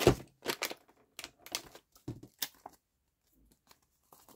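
Paper and plastic handling: a wet wipe rubbed over a glued paper pocket and a plastic wipes packet crinkling, heard as a run of short rustles and crackles over the first three seconds.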